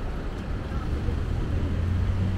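City street traffic: cars passing close by with a steady low engine and road rumble.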